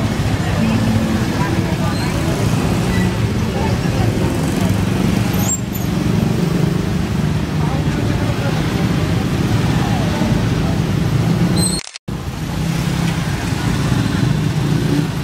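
Motorcycles and motorcycle-sidecar tricycles running at walking pace close by, a steady low engine drone, with people talking among them. The sound drops out for an instant shortly before the end.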